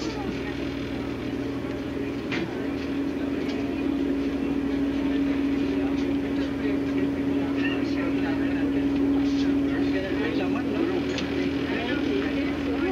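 A steady low hum, a single unchanging tone that grows louder about two seconds in, over indistinct background voices and a few scattered clicks.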